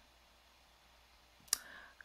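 Near silence, then a single sharp click about a second and a half in, followed by a short faint breathy hiss.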